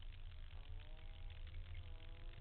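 Car engine idling with a steady low rumble, and a faint engine note drifting up and down over it.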